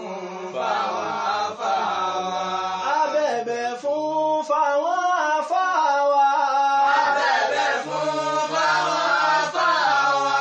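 Male voices chanting a song together, unaccompanied, in long held notes that waver and slide in pitch.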